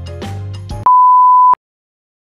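Background music, then a single steady high beep tone, a bleep-style editing sound effect, lasting under a second and cutting off abruptly.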